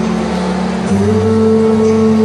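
Four-part vocal harmony (bass, tenor, alto and soprano) singing through microphones, holding a sustained chord that moves to a new chord about a second in.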